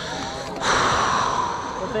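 A person's forceful breath out, a breathy rush starting just over half a second in and lasting just over a second.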